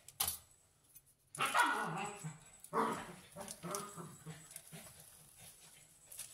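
A dog barking twice, about a second and a half in and again near three seconds, the first bark falling in pitch, followed by softer, fading vocal sounds.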